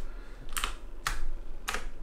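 Three separate keystrokes on a computer keyboard, spaced about half a second apart.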